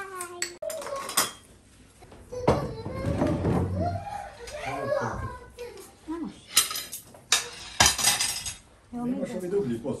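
Voices talking around a dinner table, with cutlery and dishes clinking; two sharp clinks a little past the middle are the loudest sounds.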